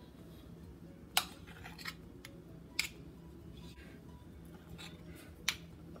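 Spoons clicking against each other and the glass baking dish as spoonfuls of dough are dropped onto the peaches: a few sharp clicks, the loudest about a second in, over a faint steady hum.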